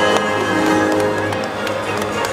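Orchestral music playing steadily, with a few short sharp knocks through it.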